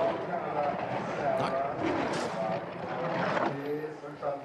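A skeleton sled's steel runners running fast down an ice track as it passes, with voices shouting over it.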